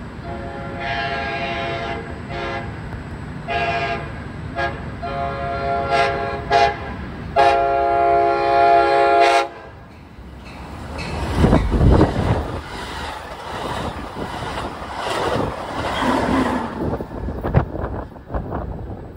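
An Amtrak passenger train's multi-chime air horn sounds a series of blasts, the last one long, as the train approaches the station without stopping. The train then rushes past at high speed with a loud wheel and air rumble that fades away.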